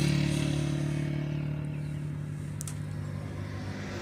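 Massey Ferguson 385 tractor's four-cylinder diesel engine idling steadily, slowly getting quieter.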